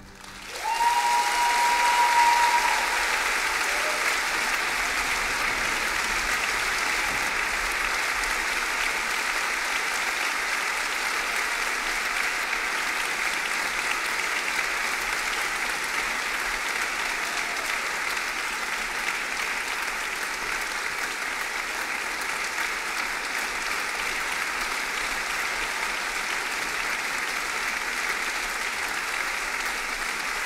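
Large audience applauding in a concert hall. The applause builds over the first two seconds and then holds steady. A single held high cheer rises over it near the start.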